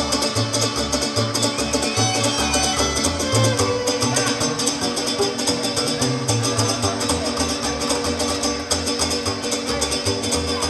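Live Purépecha folk string trio (double bass, guitar and violin) playing a lively tune over a steady plucked bass beat.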